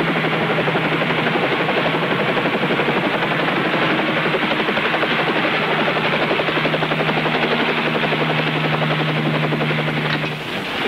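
Bell 47 helicopter coming in to land: a fast, steady chop of the rotor blades over the steady hum of the engine.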